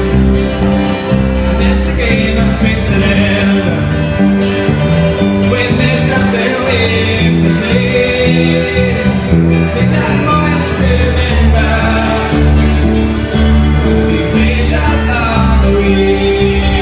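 Live band music played loud over a PA: a man singing over strummed acoustic guitar, electric bass and keyboard, in a country-folk style, with occasional cymbal hits.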